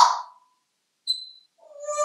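African grey parrot calling: a sharp squawk at the start, a short high whistle about a second in, then a longer pitched call near the end.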